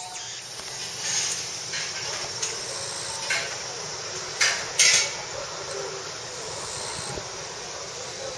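Aerial ropeway gondola running on its cable: a steady hiss with a few short louder rushes, the loudest two close together about four and a half to five seconds in.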